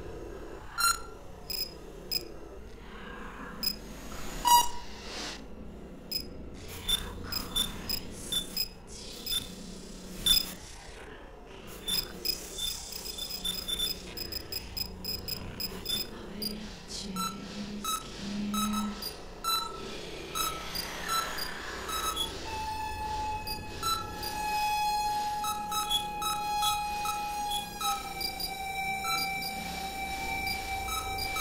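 Experimental electronic music from synthesizers: sparse sharp clicks and short electronic blips, then a held synth tone with overtones that sets in about two-thirds of the way through under repeating bleeps, dropping slightly in pitch near the end.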